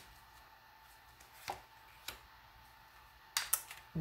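Tarot cards being handled and a card laid onto the spread: a few faint isolated clicks, then a quick cluster of louder card snaps and taps near the end.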